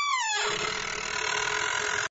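Cartoon sound effect of a door swinging open. It begins with a creak that falls in pitch, runs on as a steady rushing sound, and cuts off suddenly.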